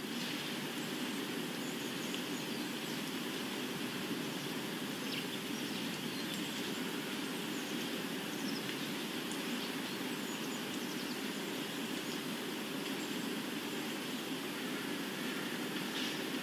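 Steady outdoor ambience: a constant rushing noise with scattered faint bird chirps.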